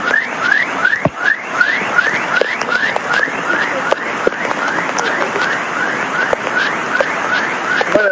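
Floodwater rushing steadily, with a short, high, rising chirp repeated evenly about two or three times a second over it.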